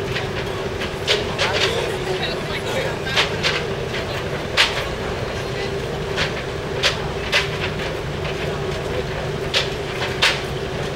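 Steady low machinery hum with irregular sharp clacks of footsteps on the cruise ship's metal gangway steps.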